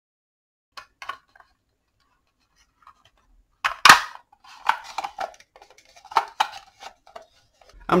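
Hard plastic housing of a Black & Decker 18V battery pack being handled and pressed together: scattered clicks and knocks, the loudest a sharp click about four seconds in, followed by a run of lighter clicks and rattles.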